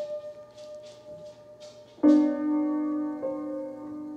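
Upright piano played slowly: a held note fades for about two seconds, then a loud chord is struck halfway through and left to ring, with another note added a second later.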